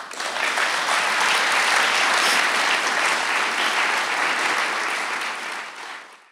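Audience applauding at the close of a talk, a dense steady clapping that starts at once and fades out near the end.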